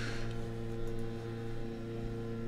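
A leaf blower running outside the window: a steady, unchanging engine hum.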